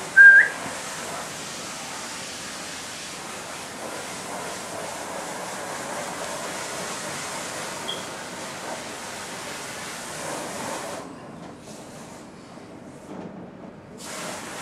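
A person whistles once, a short rising whistle calling a dog, followed by a steady rushing air noise that cuts off suddenly near the end.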